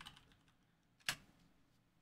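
Near silence broken by a single click of a computer keyboard key about halfway through.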